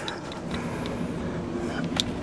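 Quiet handling sounds: faint rustling and a few light clicks over a low steady hum, the sharpest click at the very end.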